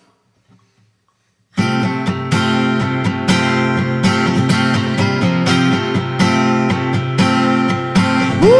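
Acoustic guitar strumming chords in a steady rhythm, starting abruptly about a second and a half in after near silence: the opening of an indie rock song.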